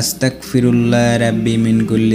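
A man's voice reciting an Arabic istighfar, a prayer for forgiveness, in a slow melodic chant. After a short break about half a second in, he holds long, steady notes.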